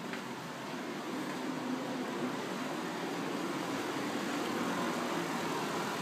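Hydronic heating boiler and its circulator pump running: a steady mechanical hum and rush that grows slowly louder.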